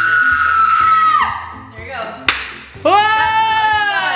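A woman's long, high scream, held steady and fading out about a second in, then a sharp click, and near the end a second, lower drawn-out cry that wavers at its close. Background music with a steady low beat runs underneath.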